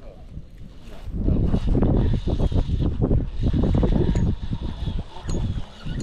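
Wind buffeting the camera microphone in gusts, a low, uneven rumble that picks up about a second in and dies down near the end.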